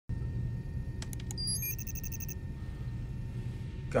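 Computer sound effects over a steady low hum: a few sharp clicks about a second in, then a quick run of high electronic beeps and chirps as search results come up on a laptop screen.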